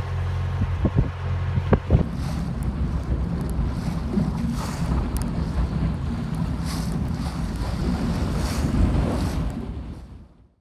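Narrowboat engine running steadily, with a few sharp knocks, for about two seconds. Then heavy wind buffets the microphone over the choppy river water, and this fades out near the end.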